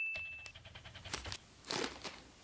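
Plastic blind-bag packet crinkling and crackling as it is handled, in a few faint scattered crackles with one slightly louder rustle near the end. The fading tail of a chime tone is heard at the very start.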